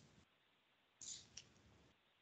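Near silence on a webinar's audio line, broken about a second in by a short faint rustle and a single small click.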